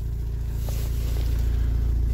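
Opel Astra H engine idling steadily, heard from inside the cabin as a low, even hum.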